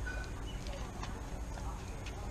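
A dog's claws clicking on a concrete patio as it walks, a few scattered clicks over a steady low rumble.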